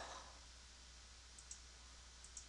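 Two quick, faint computer mouse clicks about a second and a half in, over near-silent room tone with a faint low hum.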